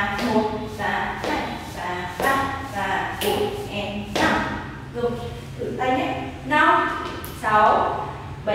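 Mostly a woman speaking, with the thuds and taps of dance steps on a wooden floor.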